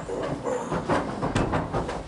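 A roomful of people getting up from their seats: chairs knocking and scraping and feet shuffling, in an irregular run of knocks and clatter.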